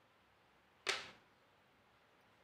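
One short, sudden swish about a second in, fading quickly: a string threaded with macaroni being pulled across and laid down on the board.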